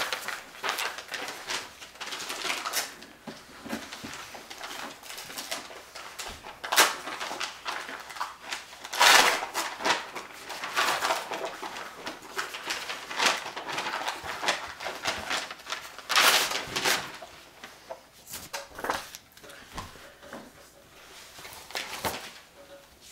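Paper handling: envelopes being torn open and the papers inside unfolded and leafed through, a string of dry rustles and rips. The loudest sweep comes about nine seconds in and lasts about a second, with another about sixteen seconds in.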